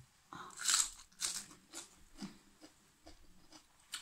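A bite into a crisp raw napa cabbage leaf: a loud crunch about half a second in, then crunchy chewing that grows weaker over the next few seconds.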